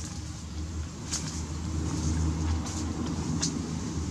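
A steady low motor-like hum runs underneath, with a few sharp crackling clicks, the sound of a plastic food tray being handled.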